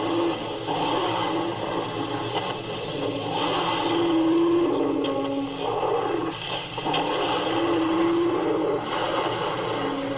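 Television documentary soundtrack recorded off the TV's speaker: snarls and growls from computer-animated saber-toothed mammal ancestors, with dramatic sound effects and short low held tones recurring every few seconds.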